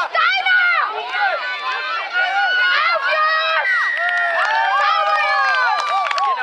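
Several high-pitched young voices shouting at once, repeating short calls over and over, with some calls drawn out near the end, from rugby players and spectators during play.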